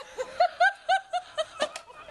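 A woman laughing in a run of about five short, high-pitched bursts in quick succession, after being doused with ice water.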